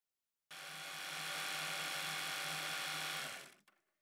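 A small motor-driven mechanism whirring steadily, with a low hum under it. It starts suddenly about half a second in and stops after about three seconds.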